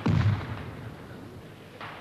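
Field artillery gun firing: a loud boom that dies away over about a second and a half, followed by a second, softer report near the end.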